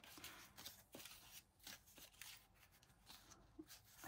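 Faint rustling of paper cut-outs being picked through by hand in a clear plastic tray, with a few light clicks and taps.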